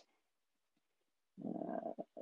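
Near silence, then about one and a half seconds in a man's drawn-out, hesitant "uh".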